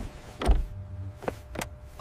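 Cartoon sound effects of a car seatbelt being handled: a low thump about half a second in, then two short clicks of the strap and buckle.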